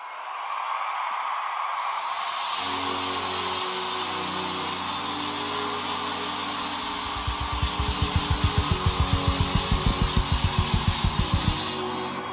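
Live worship band music over a steady wash of crowd noise: sustained keyboard and bass notes come in about two and a half seconds in, and from about seven seconds a fast, even run of kick-drum beats, about five a second, builds until just before the end.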